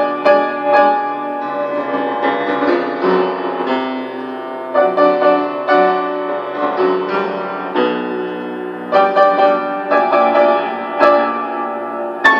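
Upright piano played solo: a polonaise. Loud, accented chords come at the start, about five seconds in and again near the end, with softer running passages between.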